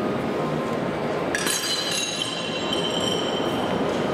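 Steady hubbub of a busy shopping-mall atrium, with a bright ringing chime about a second in: several high tones struck at once that die away over about two seconds.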